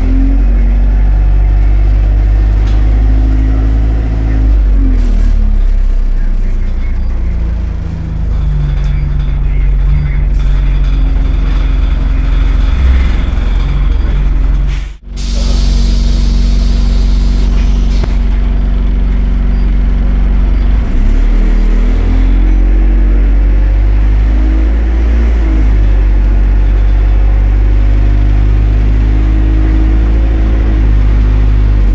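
Bus engine and drivetrain heard from inside the passenger saloon, its pitch rising and falling several times as the bus pulls away, accelerates and slows. A few seconds of hissing air come about halfway through.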